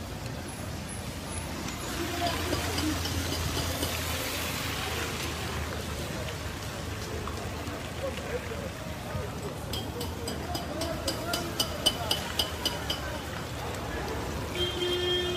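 People talking over steady street traffic noise on a wet, flooded road. A quick run of short high-pitched beeps, about four or five a second, comes a few seconds before the end.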